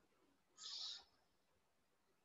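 Near silence, with one short, faint, high hiss about half a second in.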